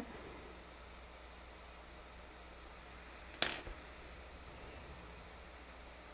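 Faint room tone with one sharp click about three and a half seconds in, from drawing tools being handled as a graphite pencil is swapped for a paper tortillon.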